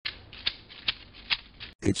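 Magic 8 Ball being shaken in the hands: a scuffling handling noise with three sharper knocks about half a second apart.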